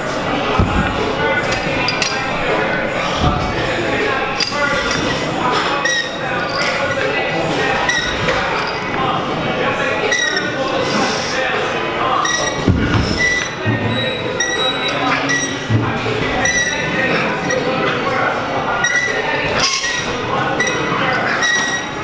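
Background music with a steady beat and vocals, running without a break.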